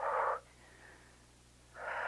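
A woman breathing hard during exertion: one short breath at the start and another near the end, nearly silent in between.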